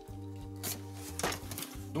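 A hobby knife slitting through the tape on a cardboard box, two short sharp cuts about half a second apart, over steady background music.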